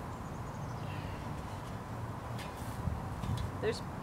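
Steady low outdoor background rumble with a faint high bird chirp in the first second. A few soft knocks come in the second half as a long-handled garden shovel is lifted off the dug soil.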